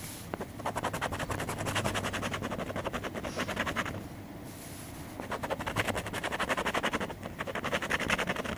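A coin scratching the coating off a paper lottery scratch-off ticket in rapid back-and-forth rasping strokes. The strokes come in three runs, with brief pauses about four seconds in and again near the end.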